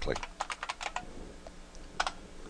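Computer keyboard being typed on: a quick run of keystrokes in the first second, then a few scattered single key presses.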